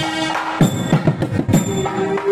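Temple procession percussion music: drums beaten in a quick run of strokes through the middle, with bright ringing metallic tones over them and a steady held tone coming in near the end.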